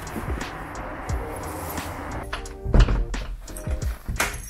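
Background music, with a door shutting in a single heavy thunk near three seconds in.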